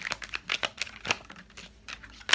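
Tarot cards being shuffled by hand: a run of quick, irregular flicks and rustles of card stock.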